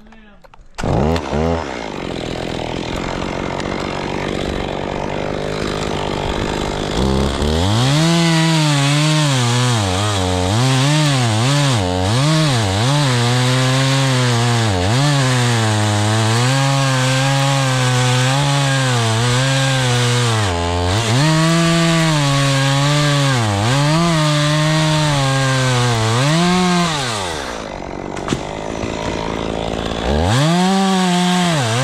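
Stihl MS 250 two-stroke chainsaw running, comes in about a second in. From about seven seconds in it is at full throttle cutting into oak, its pitch dipping and recovering again and again as the chain bogs in the wood. Near the end it drops off briefly before revving back up.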